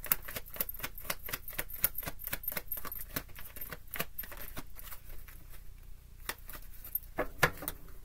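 A deck of tarot cards shuffled by hand: a rapid run of soft card-on-card clicks that thins out about five seconds in.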